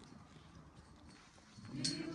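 Low murmur of an outdoor gathering, then a choir starts singing about a second and a half in.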